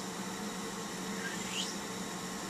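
Hands rolling a soft clay coil back and forth on a wooden tabletop, a faint rubbing over a steady low room hum and hiss.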